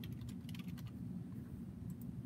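Keystrokes on a computer keyboard: a quick run of clicks in the first second, then a few scattered ones, over a steady low room hum.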